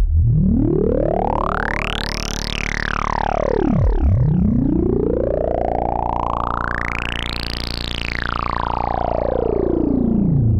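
Novation Bass Station 2 monophonic analog synthesizer holding one low, buzzy bass note while its resonant filter is swept slowly up and down by hand. The result is a wah-like sweep that rises to a bright squeal and falls back twice.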